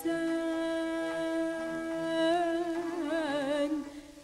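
A singer holds one long steady note of a Turkish art song in makam Hüzzam, then ornaments it with wide vibrato and melismatic turns in the second half before the phrase falls away near the end. Faint lower accompaniment notes sound underneath.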